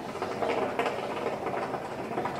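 Hookah water bubbling steadily as someone draws a long pull of smoke through the hose: a dense, rapid gurgle.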